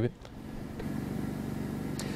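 Steady low mechanical hum with a faint hiss behind it, fading up in the first half second, picked up by an open outdoor microphone.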